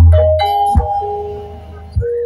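Banyumas ebeg gamelan music: ringing mallet-struck metallophone notes over a heavy low drum beat at the start, the music dying down toward the end.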